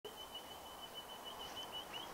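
Faint outdoor ambience with a thin, steady, high-pitched bird call that wavers slightly in strength.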